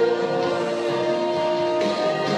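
Gospel song with singing voices holding long, steady notes.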